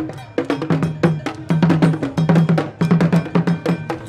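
Traditional Asante percussion: a struck bell and drums playing a fast rhythm, about five or six strokes a second.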